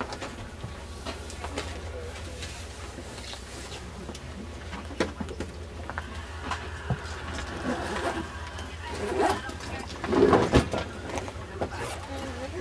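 Steady low hum inside an Amtrak passenger coach, with scattered clicks and knocks and passengers' voices in the background; the voices grow louder over the last few seconds.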